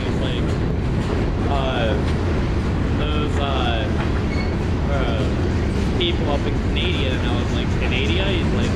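Freight cars rolling past on steel wheels, with a steady low rumble of wheels on rail and frequent short high squeals and screeches from the wheels.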